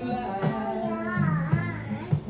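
A toddler singing along in a wavering, wordless voice, her pitch sliding up and down in the second half, over a recorded country song playing in the background.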